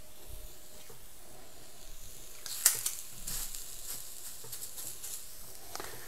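Ground chicken sausage scooped onto an electric griddle preheated to 350°F, sizzling faintly. A short, louder burst of sizzle comes with a sharp click a little under three seconds in.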